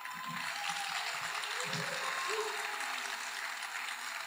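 Theatre audience applauding with steady clapping, a few faint voices under it.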